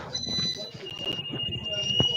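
Background sound picked up by a participant's unmuted microphone on a video call: a steady high-pitched tone that changes to a slightly lower one under a second in, over faint voices.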